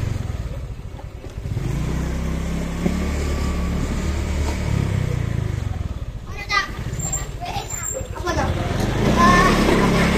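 Motorcycle engine running at low speed, a steady low drone, as the bike rolls along. Voices, including children's, come through about six seconds in and again near the end.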